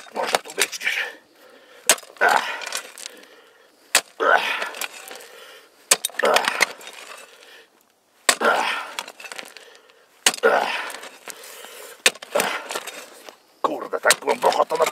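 Clamshell post-hole digger stabbing into stony desert soil. There is a sharp strike about every two seconds, and each one is followed by a short gritty rasp of soil and gravel.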